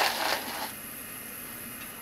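Plastic seasoning sachets crinkling and clattering lightly as they are set down on a stainless-steel counter. The sound stops under a second in, leaving a faint steady hiss.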